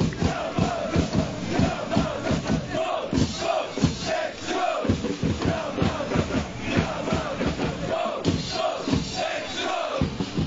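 A crowd of football supporters chanting a player call in unison, shouting in short repeated phrases over a steady beat.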